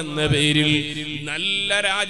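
A man's voice chanting in long, drawn-out melodic notes, holding one pitch and then stepping up to a higher one a little past halfway.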